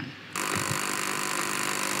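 Quiz contestant's buzzer sounding, a steady harsh electronic buzz that starts about a third of a second in and holds evenly: a school ringing in to answer the riddle.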